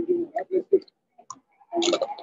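Indistinct talking with clicks; the recogniser caught no words.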